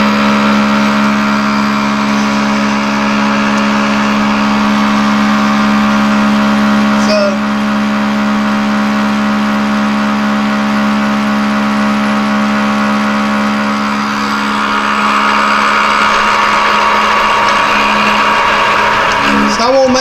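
Metal lathe running under power, taking a facing cut across a forged 8620 steel gear blank: a steady motor and gearbox hum under the hiss of the cutting tool, which grows a little louder about three-quarters of the way through.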